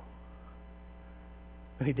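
Steady electrical mains hum, a low drone with a stack of even overtones, in a pause between words; a man's voice starts right at the end.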